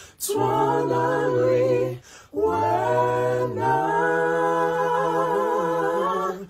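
Unaccompanied voices singing in harmony in long held phrases, with a short break for breath about two seconds in.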